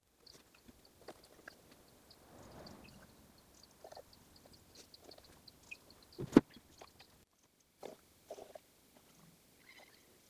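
Faint handling sounds at a wooden workbench: light clicks and small knocks as a funnel and plastic bottle are picked up, with one sharper knock about six seconds in.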